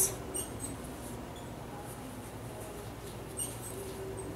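Faint rustle and a few light ticks of yarn being worked with a crochet hook, over a low steady hum.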